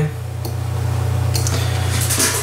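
Steady low hum with room noise, and a few faint clicks over it.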